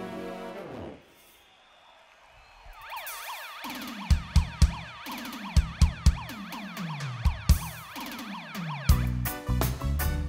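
A held keyboard chord fades out about a second in. After a short lull, a siren-like effect wails up and down over low booming hits that drop in pitch. Near the end the full reggae band comes in with drums and bass.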